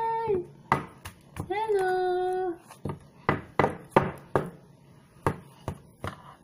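A woman's drawn-out cheerful exclamation trails off, another drawn-out vocal sound follows about a second and a half in, then a string of about eight sharp, irregular smacks, as of hands striking.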